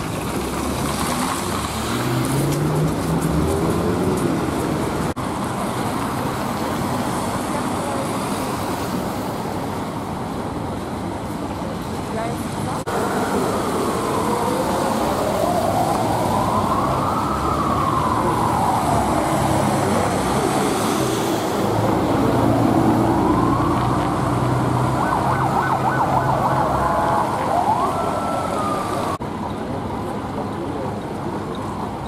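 Police car siren wailing, slowly rising and falling in pitch, starting a little before halfway through and switching to a quicker pattern near the end, over steady traffic noise and crowd voices.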